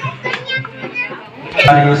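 A man chanting Sanskrit mantras, the chant resuming loudly about one and a half seconds in after a quieter pause filled with scattered background voices.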